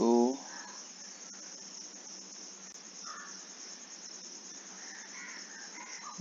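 Steady high-pitched background chirring or hiss, well below the level of the voice, with a few faint brief sounds over it.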